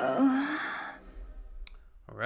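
The end of a pop song: the backing music stops, a last short, rising breathy vocal sound fades away in reverb within about a second, then a single click follows.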